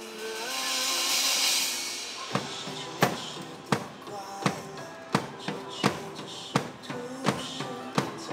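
Live drum kit played along with a pop song's backing track. A swelling hiss-like wash fills the first two seconds. Then a steady beat of sharp drum hits comes in, about three every two seconds.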